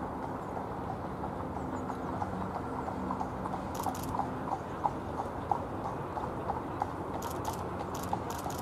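A single harness horse trotting on an arena's sand while pulling a carriage: light, even hoofbeats about three a second. A few sharp clicks come about halfway through and again near the end.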